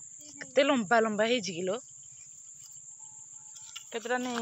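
Insects give a steady, high-pitched drone throughout. A woman's voice speaks briefly in the first two seconds.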